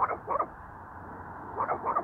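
Small dog barking: four short, sharp barks in two quick pairs, the second pair about a second and a half after the first.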